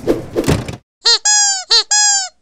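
Cartoon squeak sound effect for an animated logo: two pairs of squeaks starting about a second in, each a short chirp followed by a longer squeak that slides slightly down in pitch. Before them comes a short rushing noise.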